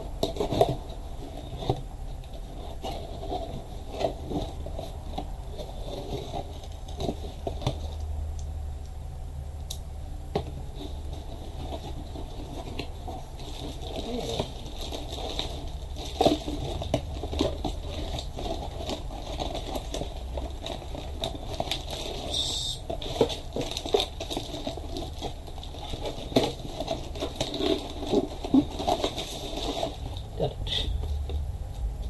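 Hands unpacking a cardboard subscription box on a desk: irregular taps, scrapes and crinkles of packaging and contents, with one short sharper rustle about two-thirds of the way through.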